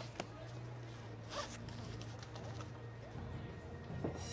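Quiet scene with a steady low hum and a few faint rustling, handling sounds, the clearest about a second and a half in.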